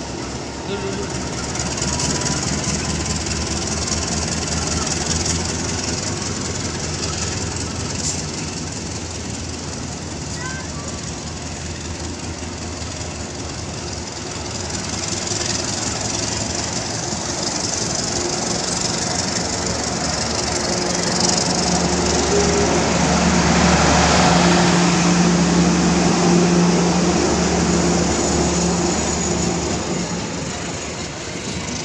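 Passenger train coaches rolling past at close range, a steady rumble and rail hiss. A low, steady drone grows louder in the second half.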